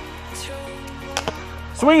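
Background music with steady held tones and a low bass. A little over a second in come two sharp clicks close together, and near the end a man's voice starts calling the swing.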